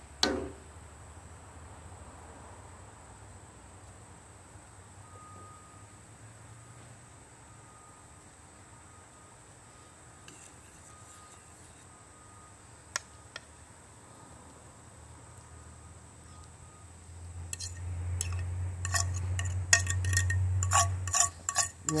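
A metal fork working in a skillet of gravy, quiet for most of the time, with two sharp clicks about 13 seconds in. Near the end comes a busy run of metallic clinks and scrapes, as the fork pushes fried onions off an enamel plate into the pan.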